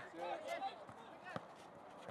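Faint, distant shouts of players across a football pitch, one short rising call among them, and a single sharp knock about half a second in.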